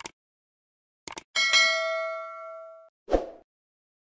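Subscribe-button animation sound effects: a mouse click, a quick double click about a second in, then a bright bell ding of several tones that rings out and fades over about a second and a half, followed by a short soft thump.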